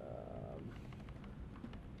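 A brief hummed 'um', then several faint computer-keyboard clicks as a new line is opened in the code.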